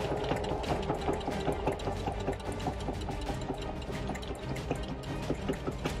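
Singer Heavy Duty 4452 sewing machine stitching through eight layers of denim, its needle punching in a rapid, even run of strokes.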